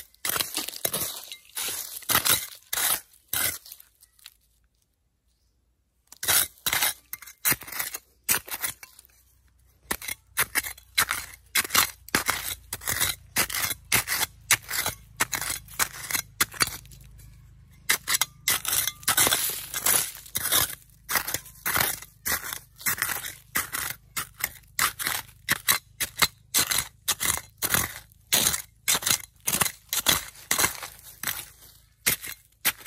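Small metal hand trowel digging into loose soil with small stones, repeated scraping, scooping strokes about two a second. There is a silent break of about two seconds near the start.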